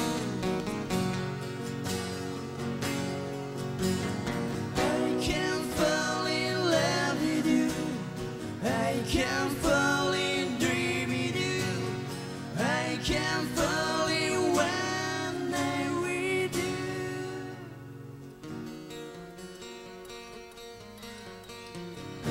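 Live acoustic-guitar band music: several acoustic guitars strummed, with a sung lead melody from about five seconds in until about sixteen seconds. The playing turns softer near the end.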